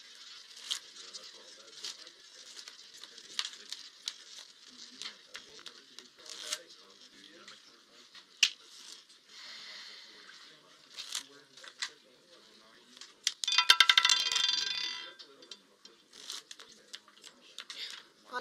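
Roulette ball running around a spinning roulette wheel with scattered clicks, then a rapid rattle for about a second and a half as the ball bounces across the pocket separators and drops into a pocket.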